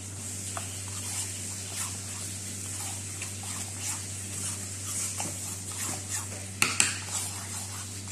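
A spoon stirring a wet mix of oats and chia seeds in a ceramic bowl: soft scraping and squelching with small clicks of the spoon on the bowl, and two sharper knocks about two-thirds of the way through. A steady low hum lies underneath.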